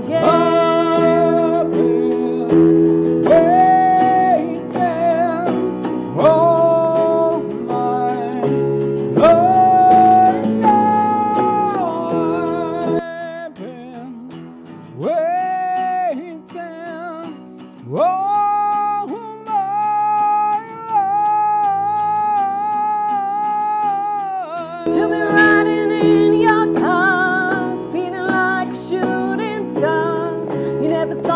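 Live pop-rock song: a woman and a man singing over a hollow-body electric guitar and electric keyboard. About 13 seconds in the low backing drops away, leaving a sparser stretch with a long held sung note. The full accompaniment comes back in near the end.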